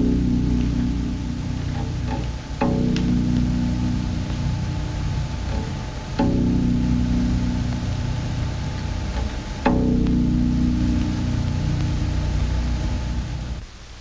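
Concert harp's lowest bass strings plucked four times, each deep note ringing on for a few seconds before the next. These are the deepest bass notes, near the low limit of hearing, that sound like a rumble.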